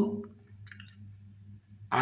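A cricket trilling steadily in one high continuous tone, with a faint low hum underneath.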